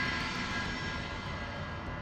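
A steady rushing drone with a faint held high ringing in it, loudest at the start and slowly fading.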